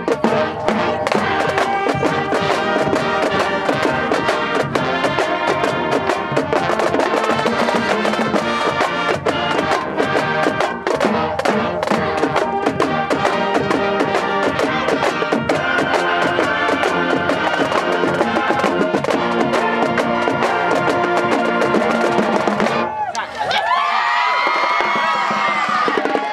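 High school marching band playing a stand tune: snare and bass drums hitting a steady beat under clarinets and brass. The music stops about 23 seconds in, and voices shouting take over.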